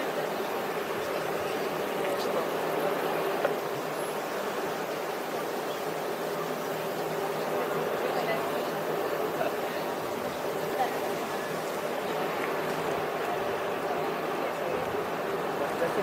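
Steady rushing outdoor noise with indistinct voices in the background.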